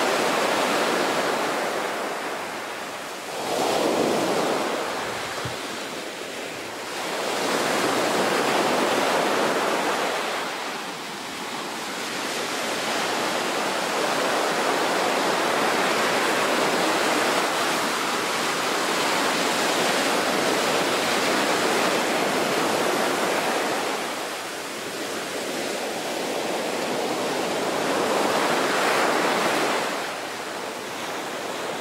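Wind buffeting the microphone and water rushing past the hull of a rigid inflatable boat under way at speed, a steady roar of noise that swells and eases several times.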